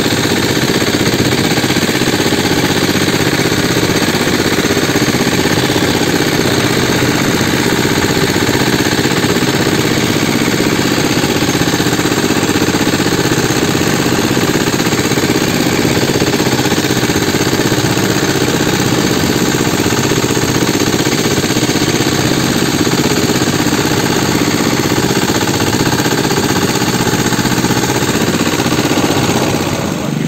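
Small single-cylinder air-cooled engine of a jukung outrigger boat running steadily under way. It is loud and close, and its pitch and level hold even throughout.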